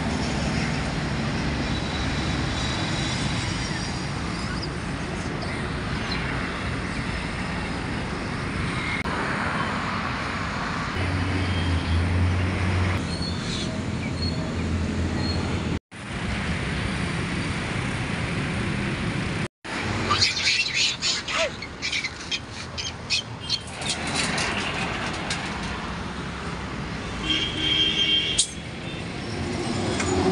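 Road traffic noise with vehicles going by, and birds chirping over it. The sound drops out briefly twice near the middle, followed by a run of sharp clicks and chirps.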